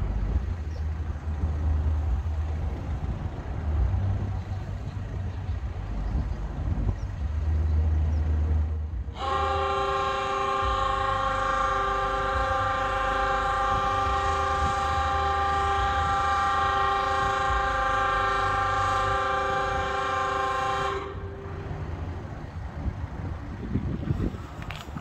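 Lift bridge foghorn sounding one long, steady blast of about twelve seconds, several tones at once, then stopping abruptly; it signals that the bridge span is fully raised. A low rumble runs before the horn starts.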